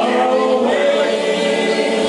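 Two male voices singing karaoke together into microphones over a backing track.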